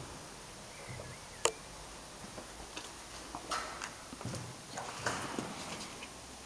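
Footsteps of someone walking through an empty building, irregular scuffs and light knocks, with a sharp click about a second and a half in.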